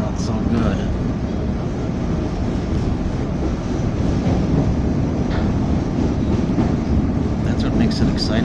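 Steady low rumble of a CTA Blue Line rapid-transit car running at speed, heard from inside the car: wheels on the rails and the car's running noise.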